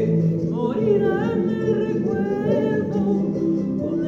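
A young male solo voice sings a Spanish-language ballad over instrumental accompaniment, sliding through long, wavering held notes.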